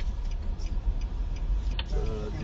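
Steady low rumble of the car's engine and tyres heard inside the moving car's cabin, with a sharp click at the start and another near the end.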